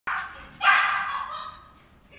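Small dog barking twice, the second bark louder, the sound echoing in a large indoor hall.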